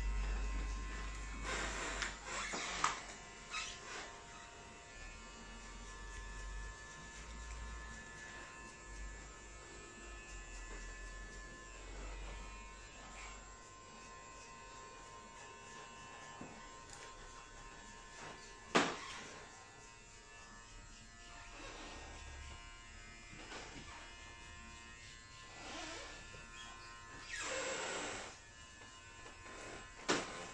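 Cut-throat razor scraping across a lathered, shaven scalp in short strokes, with a few sharper scrapes and knocks and one longer rasp near the end. A faint steady hum runs underneath.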